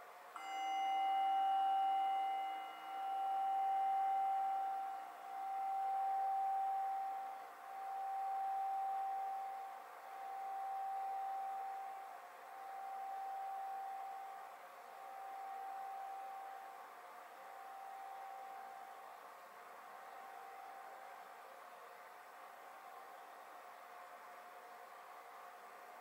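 Singing bowl struck once, just after the start, ringing out with a slow pulsing waver, a swell about every two and a half seconds. Its higher overtones die out within a few seconds while the main tone fades away over some twenty seconds.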